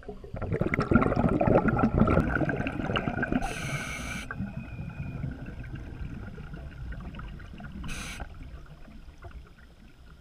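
Scuba diver's regulator breathing underwater, heard through the camera housing: a long gurgling rush of exhaled bubbles starts about half a second in and slowly fades. Short hisses of inhaled air come at about three and a half seconds and again near eight seconds.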